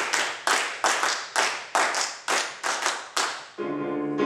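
A choir clapping hands together in time, about two claps a second. Piano and singing come back in near the end.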